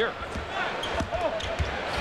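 A basketball being dribbled on a hardwood court, a run of short low bounces, over steady arena crowd noise.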